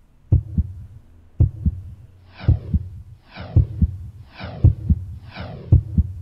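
Heartbeat sound effect from a raffle-draw app: a double low thump about once a second. From about two seconds in, each beat also carries a falling whoosh. It is suspense audio playing while the winner draw loads.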